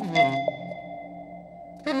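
A bell tone struck once and left ringing, its clear high overtones holding for most of two seconds over a low sustained drone. A second bell strike comes near the end.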